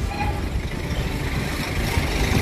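Steady road traffic noise: a low rumble of vehicle engines with no single event standing out.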